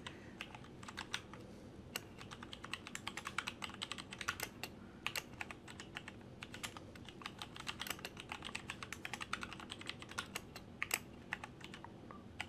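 Typing on a computer keyboard: an irregular run of light key clicks, some in quick flurries.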